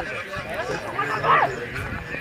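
Men's voices calling out over the commentary, with one loud, high shout about a second and a half in.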